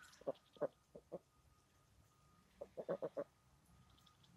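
Pekin ducks giving short, low quacks: four spaced calls in the first second, then a quick run of about five near three seconds in.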